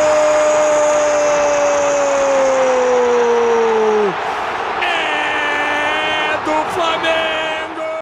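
Television commentator's long, drawn-out "gol" shout for a penalty goal, held on one note and sagging in pitch before it cuts off about four seconds in, over the noise of a stadium crowd cheering. Another long steady tone follows about a second later.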